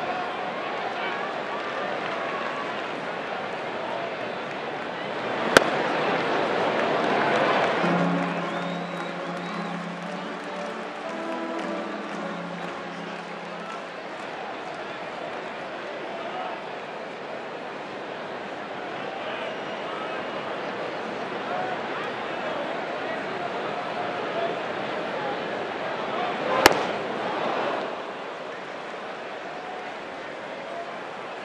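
Ballpark crowd murmur with two sharp pops of a pitched baseball hitting the catcher's mitt, about five and a half seconds in and near the end. Between them a stadium organ plays a short phrase of notes for several seconds.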